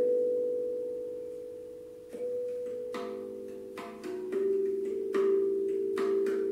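Steel handpan tuned to a Romanian minor scale (E3 A3 B3 C4 D#4 E4 F#4 G4 A4 B4), played with the fingers. One struck note rings and slowly fades for about two seconds. Then several notes follow one after another, each ringing on under the next.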